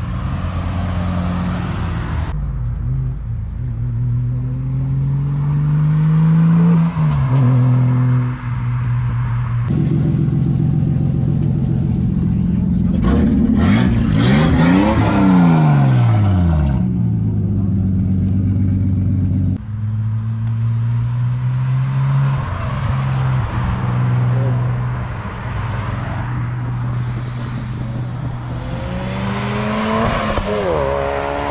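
A string of car engines edited together with abrupt cuts. Cars drive past and accelerate, their engine notes rising in pitch. About halfway through one car passes close by, its pitch rising and then falling, and later an engine runs steadily.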